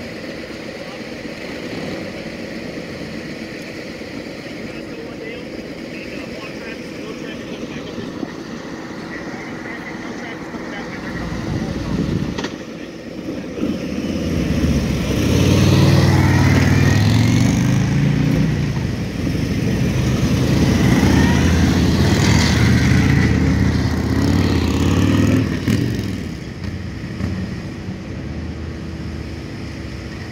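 Police motorcycle escort riding past. Engine noise builds loud from about halfway through, peaks more than once, and fades away a few seconds before the end, over a steady background of traffic.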